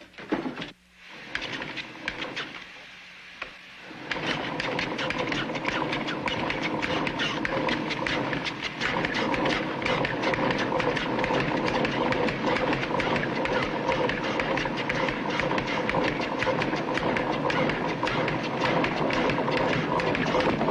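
A homemade gold detector machine running: a steady rapid clatter over a constant hum, starting suddenly about four seconds in after a few quieter knocks.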